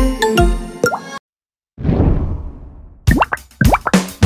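Cartoon intro jingle with bright chiming tones that stops about a second in; after a brief silence comes a noisy swish that fades away, then a quick string of short pitched pop sound effects near the end, from a subscribe-button animation.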